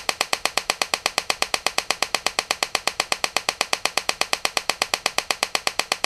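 Homemade TEA nitrogen laser firing repeatedly, its electrical discharges snapping at an even rate of about ten a second as it pumps a dye laser.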